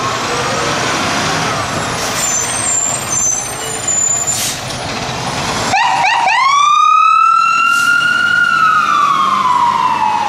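Fire engine siren wailing. After a sudden change about six seconds in, the siren sweeps up with a few quick rising whoops, holds a high tone, then slowly falls in pitch. Before that, a fainter siren glides over engine and traffic noise.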